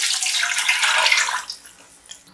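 Water poured from a steel mug into a pot, a steady splashing pour that stops about one and a half seconds in.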